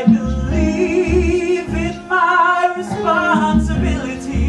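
Live musical-theatre singing with accompaniment: long held sung notes with vibrato over a low, regular beat.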